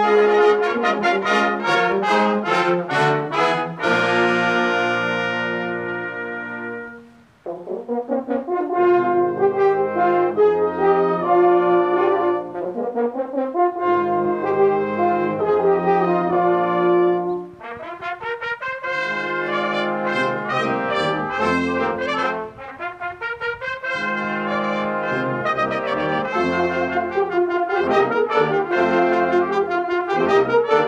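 A brass choir of trombones, French horns, tubas and trumpets playing a piece together. About seven seconds in a held chord dies away to a short break before the ensemble comes back in.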